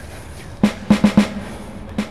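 A drum fill in the background music: four quick drum strikes a little past halfway, over a quiet bed.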